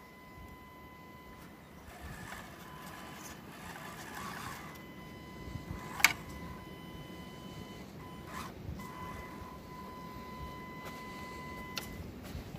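Panda Tetra K1 RC crawler's electric motor and drivetrain giving a steady high whine as it crawls slowly. One sharp click about six seconds in is the loudest sound, with a couple of fainter clicks later.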